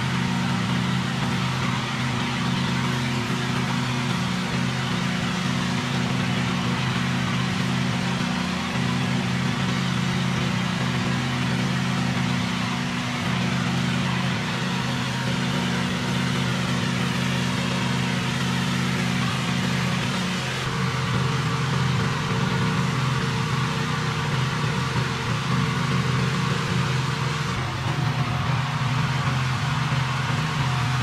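Gas-engine pressure washer running steadily, with the noise of its high-pressure water spray hitting concrete.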